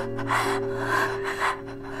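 A woman panting in pain, three short rough breaths about half a second apart, over background music holding long steady low notes.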